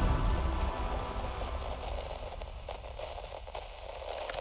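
The fading tail of an intro sound effect: a low rumble that slowly dies away under a faint crackling hiss.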